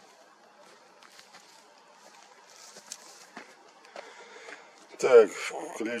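Faint scattered clicks and rustles of camera gear being handled, then a man speaks briefly near the end.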